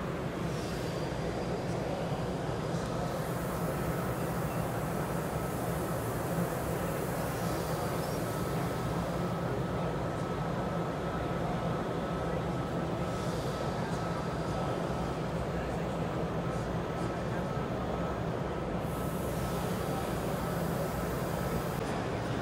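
Steady background noise of a busy exhibition hall: a dense low rumble with indistinct crowd chatter, and a faint steady high tone through most of it.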